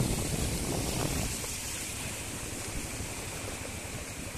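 Steady rushing noise of floodwater pouring across a road, mixed with wind on the microphone.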